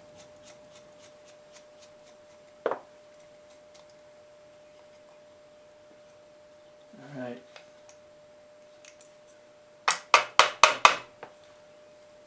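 Small metal carburetor parts and a screwdriver handled on a workbench during disassembly: a single sharp click a few seconds in, then a quick run of about six loud metallic clicks and knocks about ten seconds in. A faint steady tone runs underneath.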